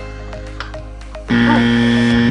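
Background music: a run of short, evenly spaced plucked notes, then a loud sustained note lasting about a second from a little past halfway.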